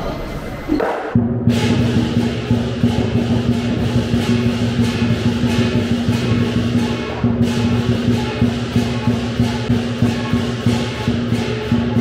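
Lion dance percussion of drum, cymbals and gong, starting about a second in and playing a steady, driving beat with a brief break in the cymbals a little past the middle.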